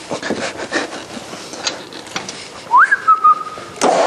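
A few light clicks and knocks of a hand tool at the wheel, then a person whistling near the end: one note that slides up and then holds steady for about a second.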